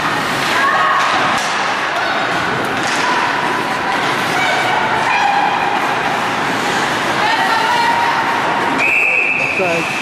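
Voices shouting over the noisy din of an ice hockey game in a rink, then a referee's whistle blown once and held for about a second near the end, stopping play.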